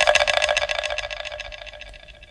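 A rapid, even rattle of strikes, about fifteen a second, with a faint ringing tone under it. It starts sharply just before and fades gradually away.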